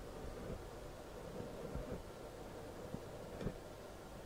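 Quiet room tone with a low hum and a few faint soft knocks from the handheld camera being moved.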